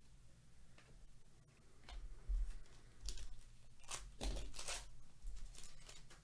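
Faint rustling and crinkling of a foil trading-card pack wrapper being handled and torn open, in several short bursts about two, three and four seconds in.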